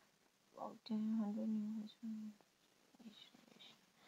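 A lecturer's drawn-out hesitation sound, a flat hummed 'mmm' held at one pitch for about a second and a half, between pauses in speech.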